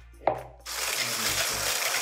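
Electric hand blender with a whisk attachment switched on and whipping heavy cream in a bowl: a click, then a steady whirring hiss from about two-thirds of a second in.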